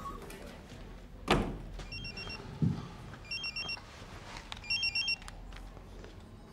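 Pager beeping, three short bursts of high electronic beeps about a second and a half apart, after a sharp thump about a second in.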